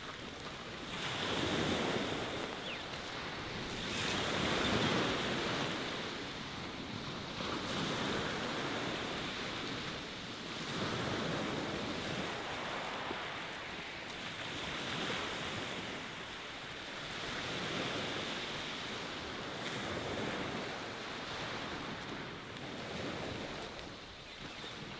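Sea waves breaking and washing up a shingle beach, the surf swelling and falling back every two to three seconds.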